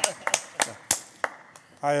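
A few people clapping by hand, single claps about a third of a second apart that thin out and stop about a second and a half in. A man starts speaking near the end.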